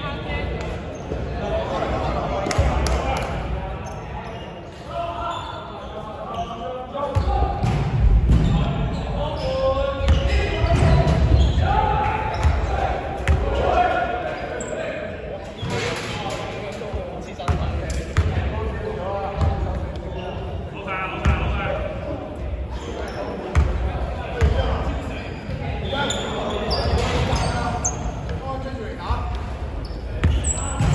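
A basketball bouncing repeatedly on a wooden gym floor, mixed with players' and the referee's voices, all echoing in a large indoor sports hall.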